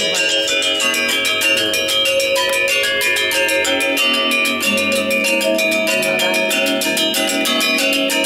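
Balinese gamelan accompanying a wayang shadow-puppet play: bronze metallophones struck in fast, dense interlocking strokes, their notes ringing on under one another.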